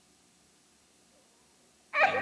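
Near silence, ended right at the very end by music starting suddenly.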